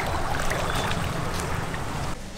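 Water splashing from a child swimming in a pool, with wind noise on the microphone.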